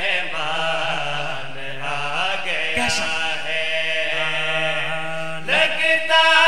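A man's voice chanting a devotional verse in a drawn-out melodic line, bending in pitch and then holding one steady note for about three seconds. The voice rises louder near the end.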